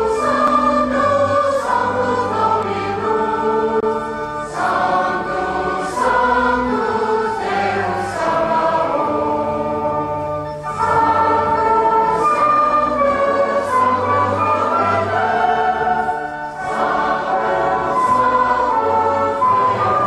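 Choir singing a liturgical hymn in long held phrases, with short breaks between phrases about every six seconds.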